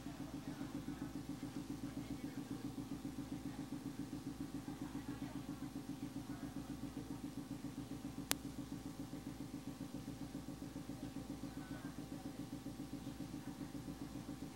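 A steady low hum that pulses evenly about five or six times a second, with a single sharp click about eight seconds in.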